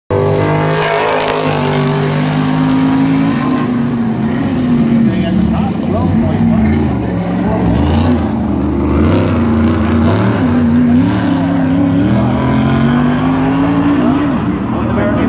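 A single race car's engine lapping a short oval during time trials, its note climbing as it accelerates down the straights and falling away as it lifts into the turns.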